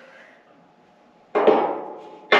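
A single sharp knock a little over a second in, ringing briefly as it fades: a bolt being tried in a mounting hole of a galvanized steel chassis that it won't quite go through.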